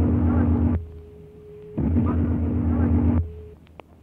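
A faint, garbled voice fragment from an electronic-voice-phenomenon tape recording, buried in heavy hum and noise, played twice in two matching bursts of about a second and a half, with a thin steady tone in the gap between them.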